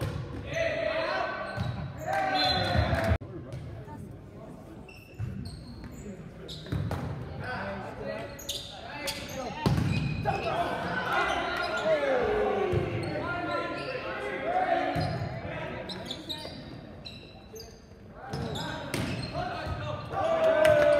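Volleyball rally in a reverberant gymnasium: sharp smacks of the ball being served, set and hit, echoing off the walls, mixed with players' calls and spectators' shouts.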